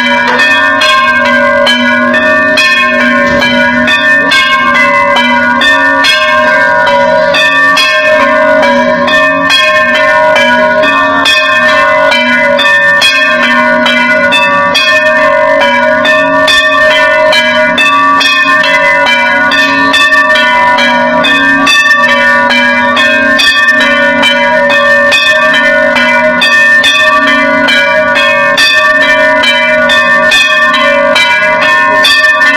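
Hindu temple aarti bells ringing loudly and continuously, struck in a rapid, unbroken rhythm so that many tones ring over one another.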